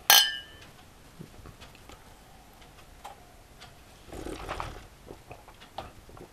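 Two beer glasses clinking together in a toast: a single bright clink with a short ring right at the start. Afterwards there are only faint small knocks and a soft rustle.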